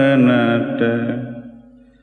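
A voice chanting a Sinhala Buddhist devotional verse of homage to the Triple Gem, holding the last note of a line. The note dips slightly early on and fades away to almost nothing near the end.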